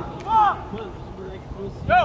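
Shouted calls from soccer players and people on the sideline: a loud call about half a second in, then more shouts starting near the end. No clear words can be made out.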